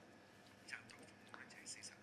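Near silence: faint room tone with a few brief, soft sounds.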